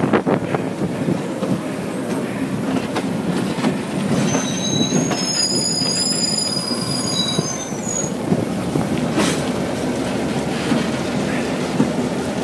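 A pair of Maryland and Pennsylvania Railroad diesel locomotives running past close by, a steady mix of engine and wheel-on-rail noise. A high-pitched wheel squeal comes in about four seconds in and lasts some three seconds.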